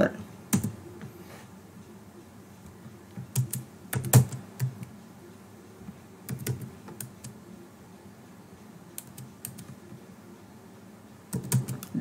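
Computer keyboard being typed on in short clusters of a few keystrokes, with pauses of a second or two between them.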